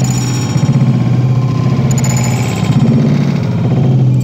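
Loud music with a steady low droning note and dense fast pulsing over it.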